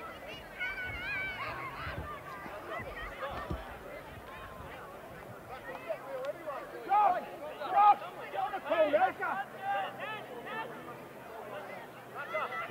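Distant shouting voices of players and spectators at a football pitch, several calls overlapping, loudest about seven to nine seconds in.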